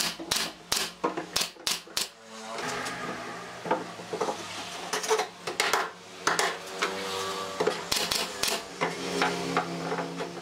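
Nail gun firing into a wooden shelf joint: a string of sharp, separate cracks, several close together in the first two seconds and more between about five and nine seconds in.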